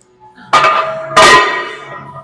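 Two metal clanks with a bell-like ring, about half a second and a second in, the second louder: iron weight plates and the steel frame of a plate-loaded gym machine knocking together as it is worked.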